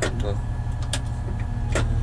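Caterpillar 980M wheel loader's diesel engine running steadily, heard inside the cab, with three sharp clicks as the machine is steered with the joystick.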